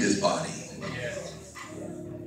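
A person's voice crying out wordlessly, loud at first, then fading within a fraction of a second into quieter murmured voices of people praying.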